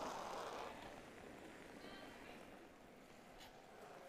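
Quiet curling-arena ambience: a soft hiss fades away in the first second, then faint distant voices.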